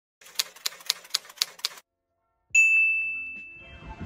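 Typewriter sound effect: about six quick keystrokes, roughly four a second, then a single bell ding that rings out and fades.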